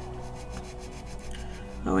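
Pen nib scratching back and forth on paper in quick short strokes, colouring in a square of a journal tracker.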